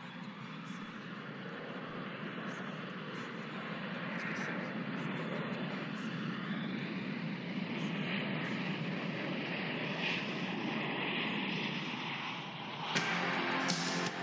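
A steady rushing noise, like wind or an aircraft, slowly growing louder; about a second before the end, music with guitar comes in over it.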